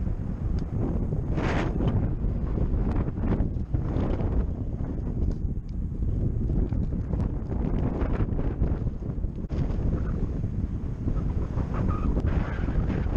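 Wind buffeting the microphone of a camera riding on a moving bicycle, a steady low rumble, with scattered brief clicks and rattles.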